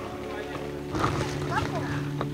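Voices talking over background music with long held notes that change about half a second in.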